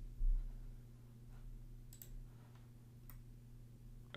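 A few faint, separate clicks from a computer mouse or keys being worked in quick, sparse strokes, the clearest about two and three seconds in, over a steady low electrical hum.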